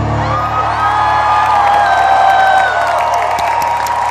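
Concert crowd cheering and whooping with scattered claps as the band's final held note fades out within the first second.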